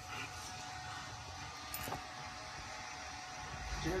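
Faint, steady low rumble of room noise, with a single small click about two seconds in.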